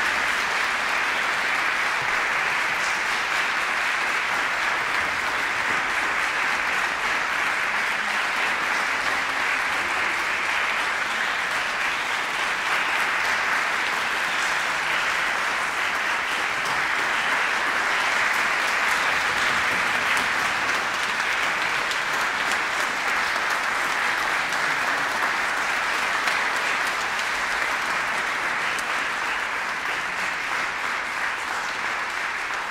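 Sustained audience applause, a steady, dense clapping that holds at an even level without letting up.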